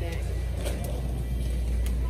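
Supermarket ambience: a steady low hum with faint background music.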